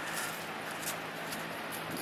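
A blanket being dragged off a solar panel across dry leaves and grass: soft rustling with scattered faint crackles, over a faint steady low hum.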